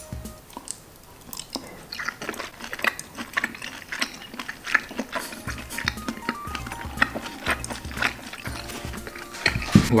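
Close-up chewing of a bite of seared wagyu beef with honeycomb: wet mouth clicks and smacks scattered throughout. Soft background music with steady low notes comes in about halfway.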